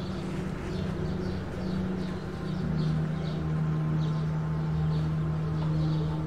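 Small birds chirping again and again, two or three calls a second, over a low steady drone that drops to a lower pitch about halfway through.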